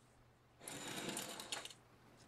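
Rapid crackling rustle of flower stems and leaves being handled, lasting about a second.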